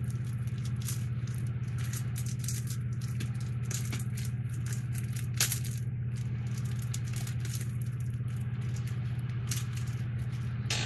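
Plastic packaging bag crinkling and rustling as it is handled, in many short crackles with one sharper snap about halfway through, over a steady low hum.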